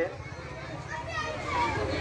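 Background crowd voices, scattered and faint, over a low steady rumble, in a pause between loud amplified speech.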